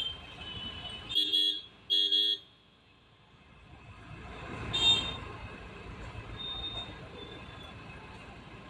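Street traffic noise with a vehicle horn honking twice in quick succession about a second in, and another short honk near five seconds.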